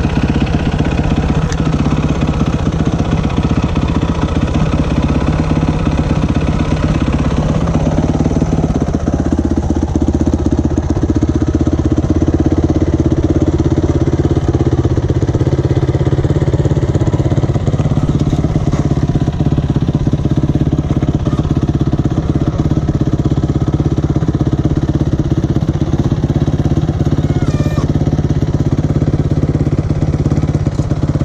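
Dirt bike engine running at low revs, heard close up from a camera mounted on the bike, its pitch shifting as the throttle changes about eight seconds in and again later.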